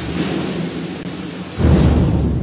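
A procession band playing a slow funeral march: a low sustained chord, with a bass drum and cymbal stroke at the start and a louder one near the end, ringing out in the church's reverberation.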